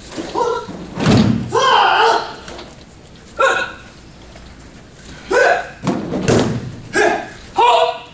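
Heavy thuds of a body landing on a gym mat from diving breakfall rolls, with a martial artist's short sharp shouts between them; the loudest thud comes about a second in, and two more land close together near six seconds.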